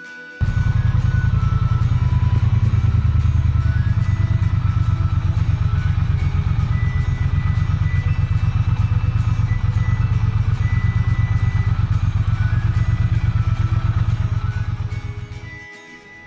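Motorcycle engine running at low revs, a loud, steady low pulsing that starts about half a second in and fades away shortly before the end.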